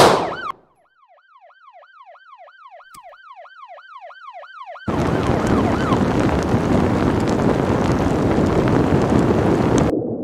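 A loud bang, then an emergency-vehicle siren in a fast yelp, about three wails a second, growing louder. About five seconds in it cuts off suddenly to a loud, rushing, bubbling underwater sound.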